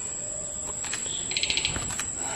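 Crickets trilling in one steady high-pitched tone, with a short, rapid run of chirps a little after the middle.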